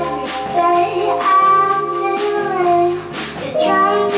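A woman singing live into a microphone over a band with bass guitar and drums. She holds one long note that slides down near the middle, while cymbal strokes land at an even pulse.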